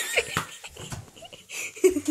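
A child laughing breathily, short giggles trailing off into panting, with a brief voiced sound near the end.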